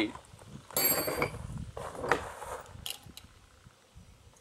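A short metallic clink with a scrape about a second in, then a softer scrape and a small sharp click near the end, as metal is handled against a concrete wall.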